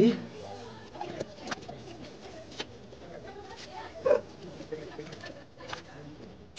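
A cloth wiping down a Royal Enfield Bullet 350 motorcycle: quiet rubbing with scattered light clicks and taps. A low bird coo sounds once about four seconds in.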